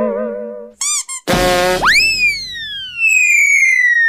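Cartoon sound effects: a wobbling boing-like tone that stops under a second in, two short warbling chirps, then a burst that swoops up in pitch and glides down into a long falling whistle.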